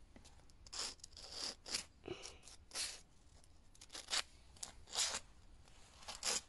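Sandpaper rubbed by hand over the edges of a new minibike centrifugal clutch's shoe linings, breaking their sharp edges before the clutch is refitted. It comes as about eight faint, short scratchy strokes at irregular intervals.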